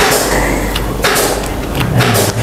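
Rustling handling noise with a couple of light knocks.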